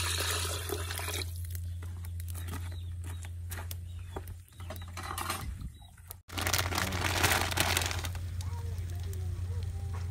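Water pouring from a plastic container into a stainless steel pot of broth, a rushing splash that stops about a second in, followed by quieter small clicks and splashes. Another loud burst of rushing noise comes about six seconds in and lasts a second or two, over a steady low hum.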